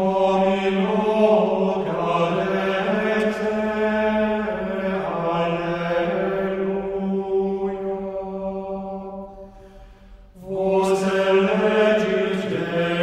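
Gregorian chant antiphon sung as a single unaccompanied melodic line in a male range, in long drawn-out phrases with a brief breath break about ten seconds in before the next phrase begins.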